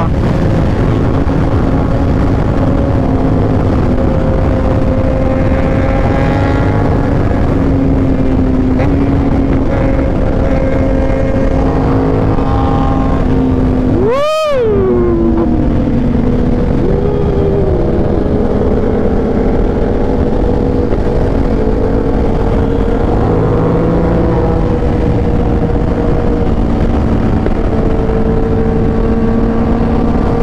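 Aprilia RS660's parallel-twin engine running at steady cruising revs under heavy wind rush. About halfway through, the sound breaks off for a moment and the engine pitch falls sharply.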